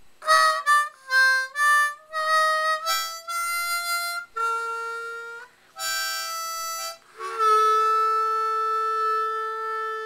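Solo melody on a Hohner Special 20 diatonic harmonica in C, fitted with a TurboLid cover: a run of short notes, a brief pause, then a long held note from about seven seconds in.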